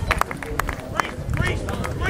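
Voices calling out on a rugby pitch, broken and indistinct, with many short, sharp clicks and knocks scattered through them.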